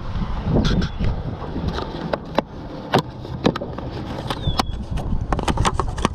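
Handling noise in an aluminium boat: scattered sharp clicks and knocks over a low wind rumble on the microphone, with a brief squeak about four and a half seconds in. The clicks crowd together near the end as the snap lid of a plastic bait cup is pried off.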